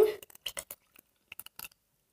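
Coconut water being poured from a carton into a silicone ice-lolly mould, heard as a few faint light clicks and ticks in two short clusters.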